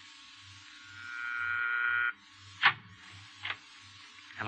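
Radio-drama orchestral bridge between scenes: a held chord swells and cuts off sharply about halfway through, then a sharp click and, just under a second later, a fainter one.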